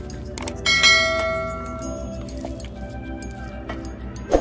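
Background music with a steady beat, and a bell-like chime about half a second in that rings and fades over about a second and a half: the notification-bell sound effect of a subscribe-button animation.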